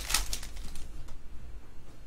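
Trading cards handled and flipped through by hand: a burst of papery rustling in the first half second, then a few light clicks of cards against each other.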